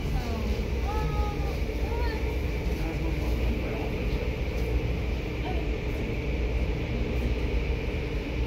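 Automatic tunnel car wash running: a steady deep rumble of the machinery with the hiss of water spray and cloth brushes working over a car, heard through the glass of a viewing window.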